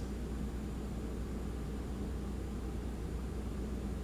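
Steady low hum and hiss of the International Space Station's cabin background, the ventilation and equipment fans, carried over the live space-to-ground audio feed.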